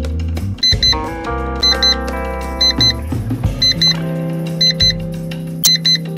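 Background music with a short, high double beep about once a second: a quiz countdown timer running until the answer is revealed.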